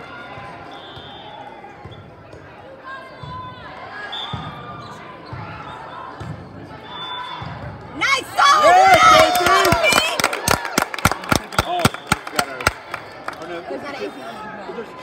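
Girls cheering and shouting on a volleyball court in a large, echoing hall, breaking out suddenly about eight seconds in as a point is won, followed by a quick run of rhythmic clapping. Before that, only faint background voices and a few low thuds.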